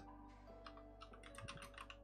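Faint computer keyboard typing: a quick run of key clicks that begins about half a second in and carries on to the end.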